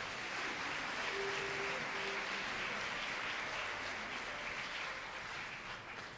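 Theatre audience applauding in a pause between musical numbers of a live opera performance, the clapping swelling at first and then gradually dying away.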